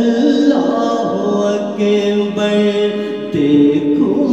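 A cappella devotional singing (a naat): voices hold long, drawn-out notes over layered vocal backing, with no instruments.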